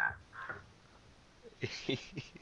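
A man's soft, breathy laughter starting a little past halfway, after a brief pause.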